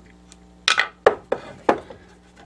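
Pieces of stone knocking together as they are handled, four short sharp clicks over about a second, with a low steady hum underneath.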